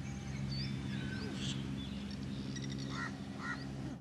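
Birds calling, short high chirps with a few lower nasal calls near the end, over a steady low hum. The sound cuts off abruptly at the end.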